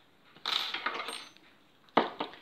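Small metal scissors picked up off a table, clinking and rattling for about a second, with a sharp click near the end.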